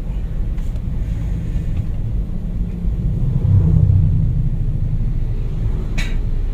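Low road and engine rumble inside the cabin of a Honda Freed being driven on a test drive, swelling louder about three and a half seconds in.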